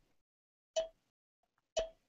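Two short synthesized cowbell hits from a web music app's step sequencer, about a second apart, heard faintly through the screen-share stream. The first comes about three-quarters of a second in and the second near the end, each a sharp strike with a brief ringing tone.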